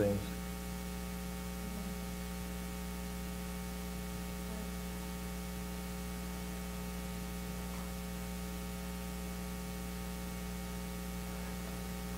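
Steady electrical mains hum, a low buzz with a ladder of even overtones, holding constant throughout.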